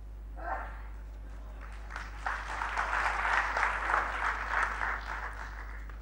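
Lecture audience applauding: a faint start, swelling into full clapping about two seconds in, then dying away near the end.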